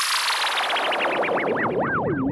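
VPS Avenger software synthesizer playing its "FX Lady Whistler" effect preset: a whistle-like tone that sweeps down from very high and turns into a warble, swooping up and down ever more slowly and widely.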